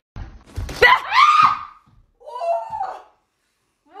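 A few sharp thumps, then a woman screams in fright with a loud rising scream, followed by a second, shorter cry.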